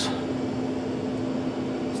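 Steady machine hum with a single low tone and an even hiss, unchanging throughout.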